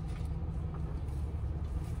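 Minivan engine idling, a steady low rumble heard from inside the cabin.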